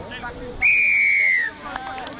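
Referee's whistle: one long, loud blast of just under a second, starting about half a second in and dropping slightly in pitch as it ends, stopping play after a tackle.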